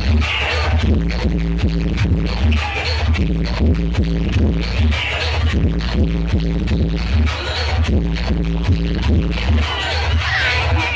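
Loud DJ dance music with a heavy bass and a steady repeating beat, played through a large outdoor sound system.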